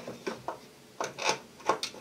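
About six short clicks and knocks as the rotary knobs of a small electric countertop oven are turned to switch it on.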